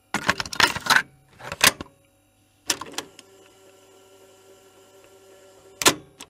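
Computer keyboard keys clicking in quick clusters, pressed as drawing-program shortcuts such as Ctrl+Z: a run of clicks in the first two seconds, a short burst about three seconds in and one more near the end, with a faint steady hum between.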